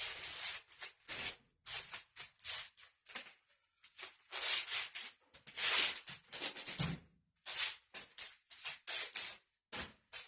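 A pair of fighting sticks swishing through the air in quick, irregular swings and spins, about two or three whooshes a second. There is one dull thump near seven seconds in.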